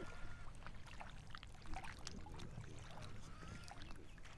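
Outdoor lakeside ambience: a steady low rumble of wind with faint water sounds, and scattered small clicks and short faint chirps.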